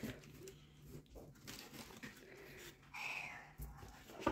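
Faint rustling of plush toys being handled in a cardboard box, with a brief faint higher sound about three seconds in.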